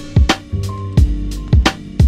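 Instrumental hip-hop beat: a drum pattern of deep kick thumps and sharp snare-like hits, several a second, over bass and sustained melodic notes.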